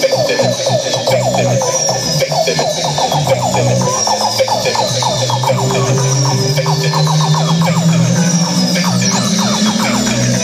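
Live band playing an instrumental passage between sung lines: loud, amplified and continuous, with rapid short notes in the middle range, a high tone that glides downward about every second and a half, and a bass line that climbs in the last few seconds.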